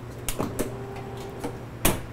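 A metal utensil clinking against a sauté pan on the stove: a few sharp knocks, the last, near the end, the loudest, over a steady low hum.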